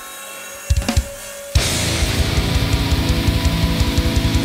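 Live heavy metal band starting a song: over amplifier hum and a held guitar note, the drums hit a few times about three quarters of a second in, then at about a second and a half the full band comes in loud, with distorted electric guitars and rapid, evenly driving kick drums.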